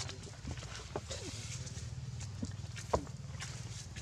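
Baby macaque giving a couple of faint, short whimpers about a second in, over a steady low background hum, with one sharp click about three seconds in.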